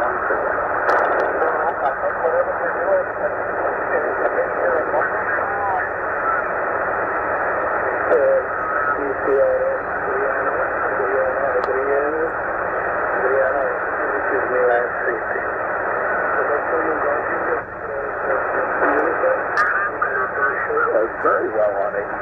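Tecsun PL-990x shortwave receiver in lower sideband mode being tuned by hand across the 40-meter amateur band: steady band hiss through the narrow sideband filter, with off-frequency single-sideband voices warbling in and out, too garbled to make out words.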